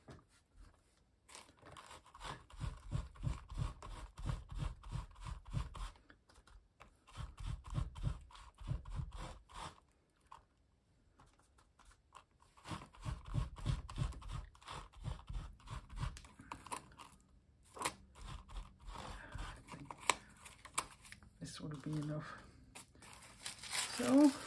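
A small paint sponge dabbed quickly and repeatedly through a stencil onto paper, in three runs of taps with pauses between, each tap giving a dull knock from the work table beneath. Near the end the paper sheet rustles as it is lifted.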